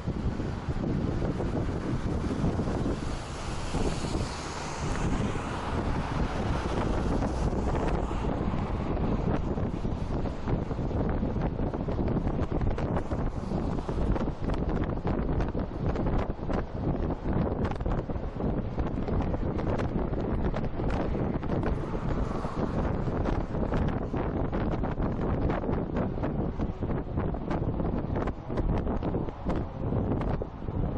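Steady road and wind noise from a car driving on an expressway, with wind buffeting the microphone. The hiss swells briefly a few seconds in and again past twenty seconds.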